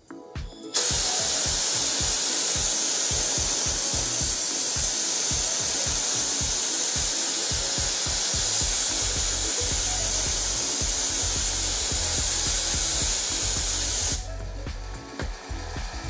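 Compressed air from an air compressor blasting through a 3D-printed resin supersonic nozzle on a blow gun: a loud, steady hiss that starts abruptly about a second in and cuts off sharply near the end.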